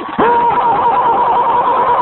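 A long held shout at a high pitch, wavering slightly, that starts just after a short dip and lasts about a second and a half.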